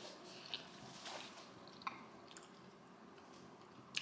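Faint chewing of a bite of pizza, with a few soft wet mouth clicks over the first two seconds or so.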